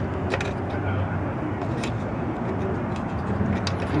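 A few faint metal clicks as a kerosene lantern burner is worked into place in its fount, over a steady low background hum.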